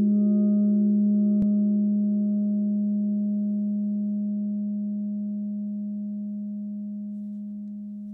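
Handmade 16-inch Vortex gong ringing out after a mallet strike: a low, steady hum with higher overtones that fade first, the whole tone dying away slowly. A faint click comes about a second and a half in.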